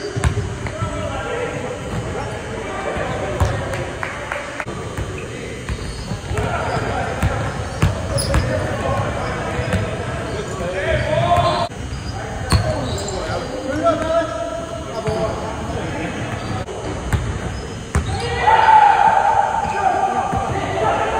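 Basketball bouncing on a hardwood gym floor during a pickup game, with sharp knocks scattered throughout. Players' voices call out in the echoing hall, loudest near the end.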